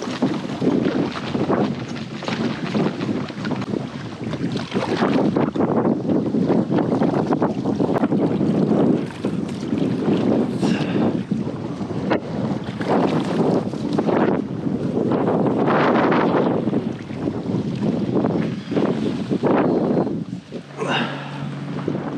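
Strong gusting wind buffeting the microphone, surging and easing, over water sloshing around a kayak out on open, choppy water.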